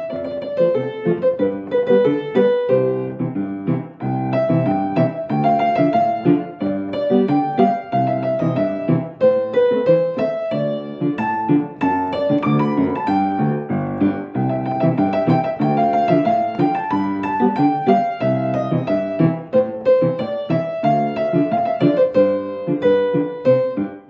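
Solo upright piano played continuously: steady chords in the left hand under a flowing melody in the right.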